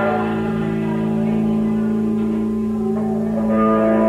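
Amplified electric guitars holding a sustained, ringing chord, with no drums; new, higher notes come in about three and a half seconds in.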